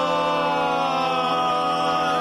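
Male barbershop quartet singing a cappella in close four-part harmony, holding one long sustained chord.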